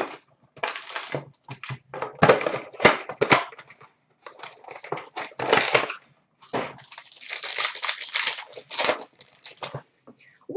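A cardboard trading-card box and its foil pack wrapper being torn open and crinkled by hand, in irregular bursts of tearing and rustling.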